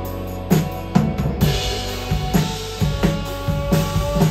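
Live rock band playing, with the drum kit to the fore: kick and snare hits about twice a second over held guitar and bass notes.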